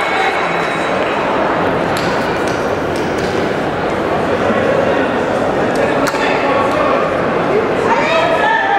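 Steady hubbub of many voices at once from spectators and competitors in a large hall, with a few sharp clicks standing out.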